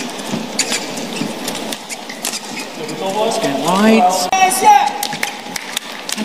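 A fast badminton rally: rackets striking the shuttlecock in a string of sharp clicks, with shoes on the court floor. About halfway through, a rising voice, a shout from a player or the crowd, is heard over the play.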